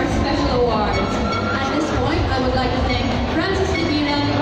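A host's voice over a large arena's public-address system, echoing, with a steady low rumble underneath.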